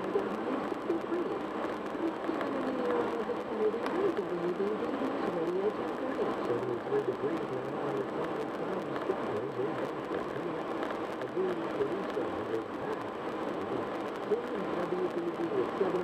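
Muffled talk from a car radio heard inside the cabin over steady road and tyre noise at highway speed.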